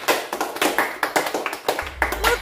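Hand clapping in applause: quick, irregular claps, several a second.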